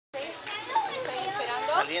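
Several people's voices, children's among them, chattering and calling out over one another.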